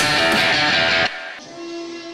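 Loud intro music for the league logo animation, cutting off suddenly about a second in; a much quieter single held tone follows.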